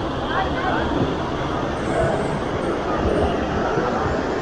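Steady wash of small waves breaking on a sandy beach, with scattered voices of people nearby.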